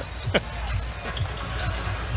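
Basketball dribbled on a hardwood court, a few short bounces over the low background noise of an arena.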